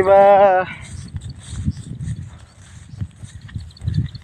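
A man's voice for a moment at the start, then soft, irregular footfalls and rustling of someone walking through a rice paddy. Faint high chirps come in near the end.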